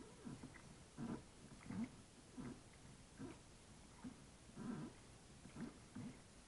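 Kayak paddle strokes in calm water, soft and regular, about one stroke every three-quarters of a second.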